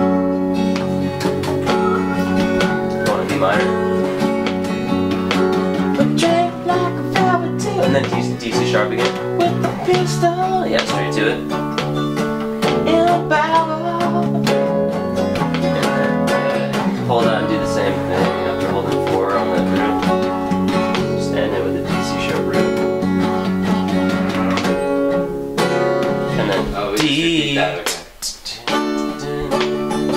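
A live band playing a country-blues song with guitars, some of its notes bending in pitch. The playing drops out briefly about two seconds before the end, then picks up again.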